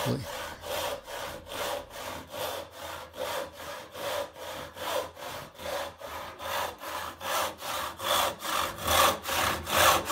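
Rip-tooth handsaw cutting along the grain of a board held in a vise, in a steady back-and-forth rhythm of short, quick strokes that use only part of the saw's length; the strokes grow louder in the last couple of seconds.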